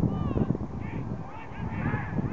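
Several voices shouting across the pitch in short, overlapping calls, with wind rumbling on the microphone.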